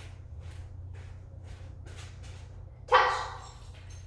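Faint steps about twice a second, then one short, loud bark from a puppy about three seconds in.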